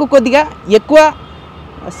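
A man talking in Telugu for about a second, then a short pause with only faint steady background noise.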